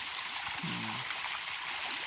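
Milkfish (bangus) feeding at the pond surface, their splashing a steady rush of churning water.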